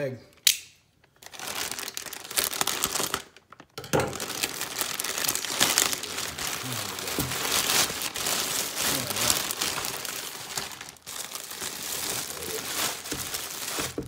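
Plastic mailer bag and the clear plastic wrap inside it crinkling as they are handled and pulled open. The sound comes in bursts with two short lulls in the first few seconds, opening with a sharp snap, then runs near-continuously.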